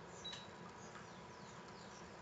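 Faint room tone with a steady low hum, a brief click with a short high beep about a third of a second in, and a few faint high chirps.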